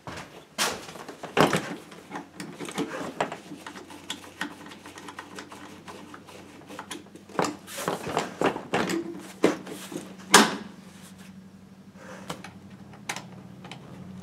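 A snowmobile seat being set and pressed into place on the machine's plastic body: irregular knocks, clicks and rustles, the loudest knock about ten seconds in, quieter for the last few seconds.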